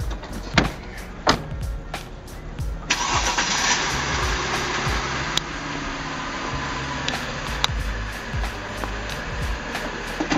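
A Mercedes car's engine starts about three seconds in and then runs steadily with a rushing sound, under background music with a steady beat.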